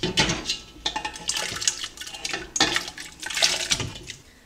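Diced raw potatoes tumbling from a plastic colander into a pot of cold water: a quick run of irregular splashes and plops that stops just before the end.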